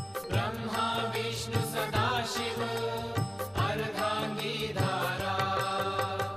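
A Hindu devotional chant sung over instrumental backing music.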